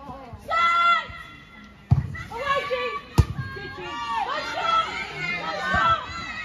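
Women's voices shouting and calling out across a football pitch during a goalmouth attack, with two sharp thuds about two and three seconds in.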